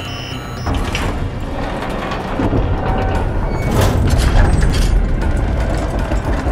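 A switch clicks, then a heavy mechanical rumble rises and grows louder over several seconds with scraping accents, like heavy doors being released and sliding open.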